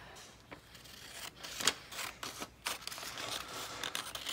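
Large scissors cutting glossy magazine paper: several separate snips, starting about a second in, as a cutout is cut in half.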